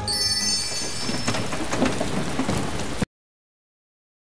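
Rain falling with thunder. It cuts off suddenly about three seconds in.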